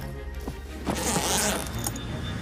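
A suitcase zipper is pulled closed about a second in, lasting roughly half a second, over background music with sustained low notes.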